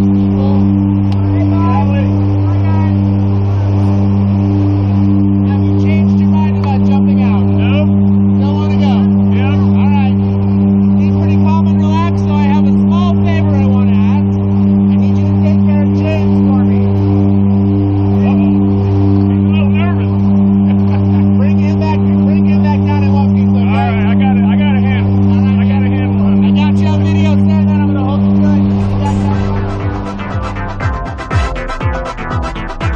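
Loud, steady drone of a skydiving jump plane's engines, heard from inside the cabin during the climb: a deep hum with a slow wavering beat. Voices are faintly heard under the engine noise.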